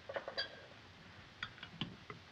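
A long spoon stirring a drink in a tall glass, clinking faintly against the glass several times, one clink ringing briefly.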